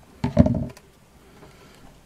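A brief knock and clatter of handling, about half a second long, as craft pieces are moved and put down on a cutting mat.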